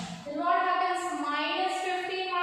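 A woman's voice speaking in a drawn-out, sing-song teaching cadence, with long held vowels.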